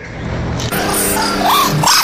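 A few short, high barks like a dog's in the second half, over a steady background hum.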